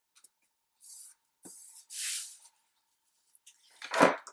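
Scrapbook paper and cardstock being handled and slid across a table: a few short, dry rustles and scrapes about one, one and a half and two seconds in, then a louder scrape near the end as the page is turned.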